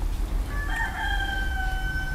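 A rooster crowing: one long held call starting about half a second in, sliding slightly down in pitch, over a low steady background rumble.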